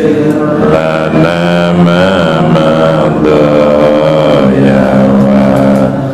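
Several voices chanting an Islamic dhikr in long, drawn-out notes that slide between pitches, with overlapping pitches and no pauses.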